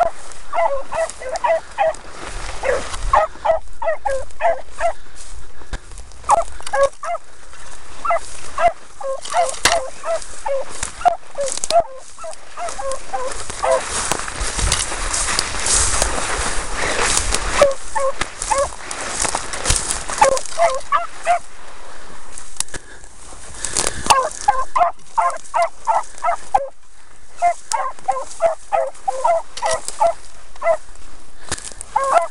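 Beagles giving tongue on a rabbit's scent: several hounds yelping in quick, repeated bursts, thickest near the start and again in the last third. In the middle stretch a loud rustling of tall dry grass rises over the yelps.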